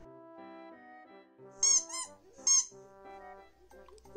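Orange rubber squeaky ball toy squeezed by hand, giving a few short, high-pitched squeaks a little under halfway in, over soft background music.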